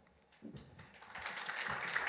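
Audience applause: scattered claps begin about half a second in and swell quickly into steady clapping from many hands.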